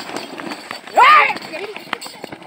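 Hooves of a pair of Ongole bulls hauling a stone sled along a dirt track, mixed with the footsteps of people running alongside. About a second in, one loud shout rises and falls over them.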